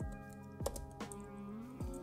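Computer keyboard keys being typed, a few separate keystrokes, over background music of steady held notes.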